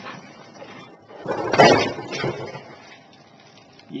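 Clear plastic bag of Lego parts crinkling as it is picked up and handled, in one loud burst of rustling a little over a second in, with fainter crackles before and after.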